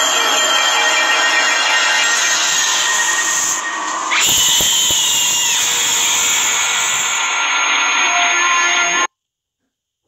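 Horror-film sound design: a loud, harsh, dense wash of noise, with a piercing held tone from about four seconds in for over a second. It cuts off abruptly near the end.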